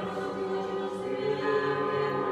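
A choir singing slow, held chords of sacred chant, the chord changing about a second in.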